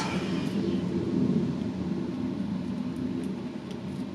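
Steady low background rumble of room tone, with a few faint ticks.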